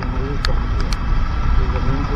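Wind rumbling over the microphone of a moving motorbike, mixed with engine and wet-tyre noise on the road, with a few sharp ticks.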